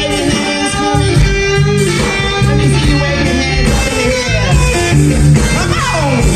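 Live blues band playing an instrumental passage: electric guitar over bass and drums, with bending, gliding notes in the second half.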